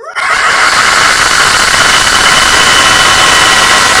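A boy's roar into a microphone, blown out into extremely loud, harsh distortion; it starts suddenly and is held steady without a break.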